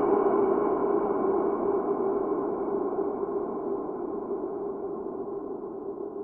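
A dark, ringing ambient drone that holds steady and fades out slowly.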